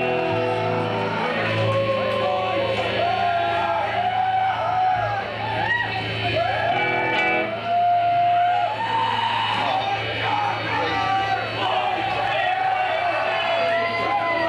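Live rock band playing loud through the venue sound system, caught by a camcorder microphone in the audience: long held guitar and bass notes, with voices shouting and whooping over them.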